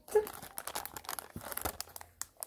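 Clear plastic packaging crinkling and crackling in the hands as a packet of decorative brads is turned over and held up, with irregular sharp crackles.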